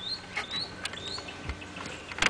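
A small bird chirping outside, three short high rising chirps about half a second apart, with a few light clicks and a soft thump from the van's dashboard controls being handled.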